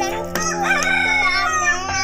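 A rooster crowing, one drawn-out crow starting about half a second in, over background music with steady held notes.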